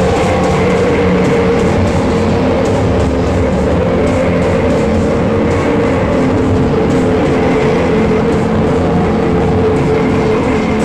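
Loud live noise-rock drone: a dense wall of distorted guitar and bass holding steady sustained notes.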